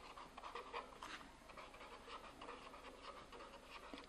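Faint scratching of a pen writing on notebook paper, in short irregular strokes.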